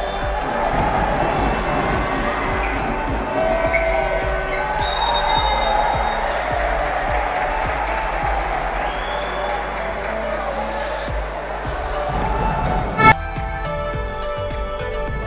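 Basketball game sound: a ball bouncing on a hardwood court with arena crowd noise, and music underneath. Near the end there is a brief loud burst, and then music with a steady beat.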